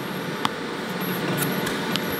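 Steady mechanical hum, with two short clicks, one about half a second in and one near the end.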